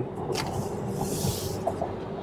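Quiet road and tyre noise inside the cabin of a Volkswagen ID. Buzz electric van on the move, with no engine note; the cabin is really quiet. A faint hiss swells briefly about a second in.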